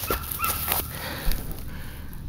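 A dog whimpering faintly, with a few soft knocks.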